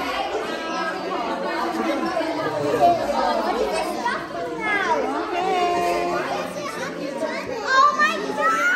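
Many children and adults chattering and calling out at once in a large hall, with high children's voices rising above the general din.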